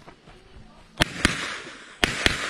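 Two pistol shots about a quarter second apart, a double tap, coming about a second in, each followed by an echo that dies away.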